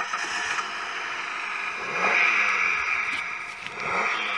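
A car engine running in a workshop, a steady mechanical noise that swells about two seconds in, with a short laugh over it.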